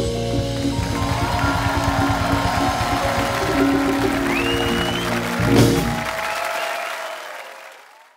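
Afrobeat band with horns, drums and keyboard holding its closing chord over a drum roll, then striking a final loud hit about five and a half seconds in. The studio audience applauds as the sound fades out near the end.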